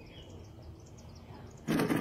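Quiet outdoor background noise with a few faint, high bird chirps. Near the end a man says "hey".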